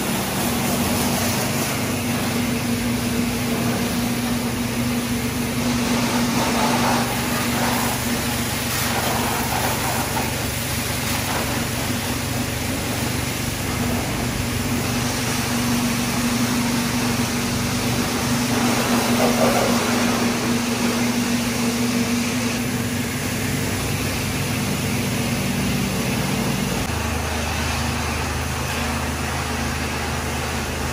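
Pressure washer running with a steady hum while its water jet sprays against the scooter's wheel and bodywork, giving a constant hiss. A deeper hum joins near the end.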